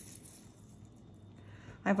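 Quiet room tone with no distinct sound, until a woman starts speaking near the end.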